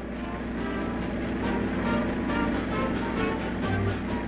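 Background film-score music, a run of short held notes at a steady level.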